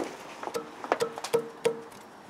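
A newly fitted ribbed alternator drive belt plucked by hand four times. Each pluck rings briefly at the same pitch, like a guitar string, which shows the belt is tensioned nice and tight.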